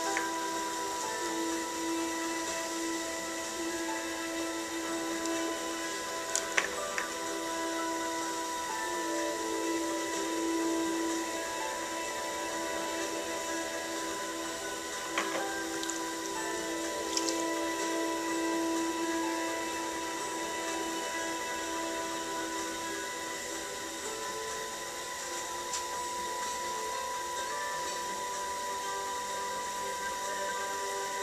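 Electric potter's wheel motor running at a steady speed, a constant whine made of several fixed tones, while wet clay is centred on the spinning wheel head. A few brief faint clicks in the first half.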